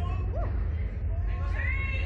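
A woman's high-pitched whining cries, short rising-and-falling squeals and a held whimpering tone, from a nervous thrill-ride rider, over a steady low rumble.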